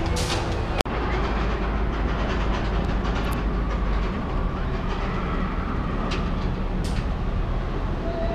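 Roller coaster train rolling along its track with a steady rumble, broken by a brief dropout about a second in.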